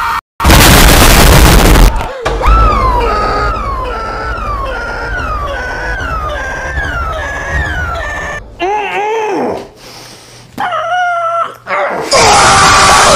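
A loud burst of noise lasting about a second and a half, then a man's short falling scream looped about ten times in a stuttering edit. Near the end come two longer, wavering screams.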